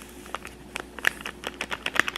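Plastic powder sachet crinkling in irregular sharp clicks and crackles as it is squeezed and shaken to pour powder into a plastic tray.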